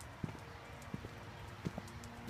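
Footsteps of someone walking: a few short, sharp steps spaced under a second apart over a low steady background.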